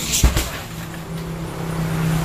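A kick landing on a heavy punching bag: one sharp thud about a quarter second in, then a lighter knock just after as the bag swings. A steady low motor hum grows underneath in the second half.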